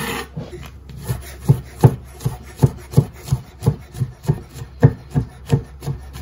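Chef's knife on a wooden cutting board: a short scrape at the start as chopped food is swept across the board, then steady chopping through mushrooms, the blade knocking the board about three times a second.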